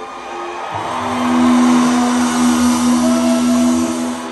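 Live rock band playing in an arena, with one long held note that swells in about a second in and carries on to the end.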